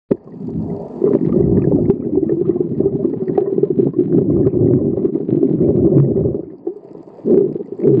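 Muffled rumbling and gurgling of water as picked up by a camera underwater, with scattered faint clicks. It eases off about six and a half seconds in and surges back shortly before the end.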